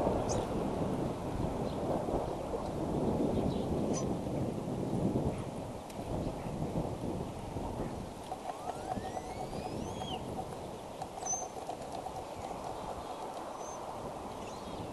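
Wind buffeting an outdoor microphone, a fluctuating rumble that is heavier in the first half and then eases. A few high bird calls cut through, including two quick rising whistles a little past the middle.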